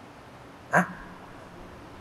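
Quiet room tone, broken about three-quarters of a second in by one short voice-like sound.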